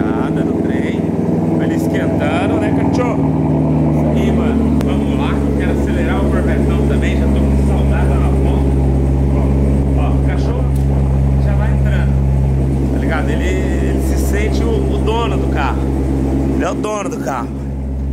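Chevrolet Corvette C7's 6.2-litre V8 idling steadily just after being started, its idle note shifting slightly about five seconds in.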